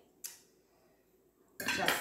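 Metal cutlery clinking once against a plate: a single sharp, short ringing clink about a quarter second in.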